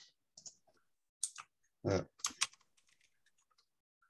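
Keystrokes on a computer keyboard: a few separate clicks, then a quick run of light taps in the second half.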